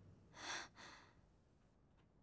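Two quick breathy exhales from a person about half a second in, the second softer and shorter.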